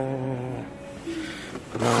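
A man's voice: a drawn-out, steady-pitched hum at the start, a short higher murmur about a second in, then a spoken "no" near the end.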